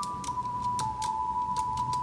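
A Teenage Engineering OP-1 synthesizer plays a slow melody of thin, pure held tones that overlap and step down in pitch about a second in, with a light, irregular clicking alongside.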